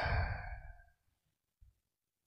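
A man's drawn-out "eh?" trailing off into a breathy exhale into the microphone, fading away within the first second, then near silence.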